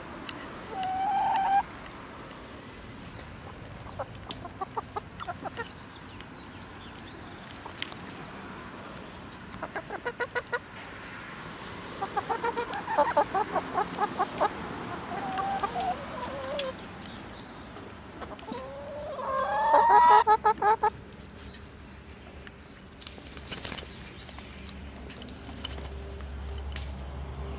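A flock of chickens clucking as they feed, in short quick runs of notes, with a brief call near the start. About three-quarters of the way through comes the loudest sound, a longer call that bends up and down in pitch.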